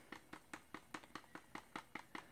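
Wooden stir stick knocking and scraping in a plastic cup while mixing acrylic paint: a faint, even run of small clicks, about five a second.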